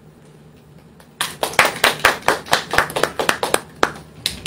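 A small audience clapping briefly: sharp, uneven claps start about a second in and thin out near the end.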